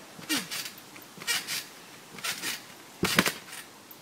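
Trampoline springs and mat creaking and swishing with each bounce, about once a second, with a heavier thump about three seconds in.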